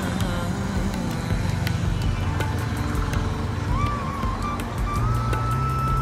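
Road traffic noise from a city street with background music laid over it; a single high steady tone comes in a little before the four-second mark and holds.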